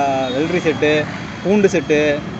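A man talking, in three short phrases with brief gaps between them.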